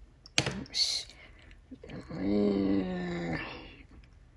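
A woman humming a long, steady-pitched "mm" for about a second and a half, after a sharp click about half a second in and a brief rustle.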